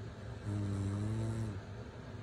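A woman snoring in her sleep: one low, steady-pitched snore about a second long, starting about half a second in.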